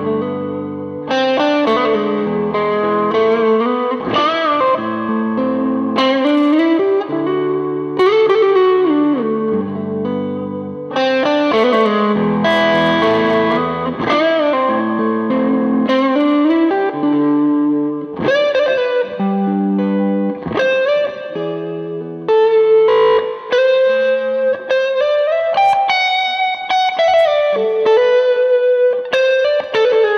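Electric guitar lead on a Gibson Les Paul's neck P90 pickup, lightly overdriven: single-note lines with many string bends and vibrato.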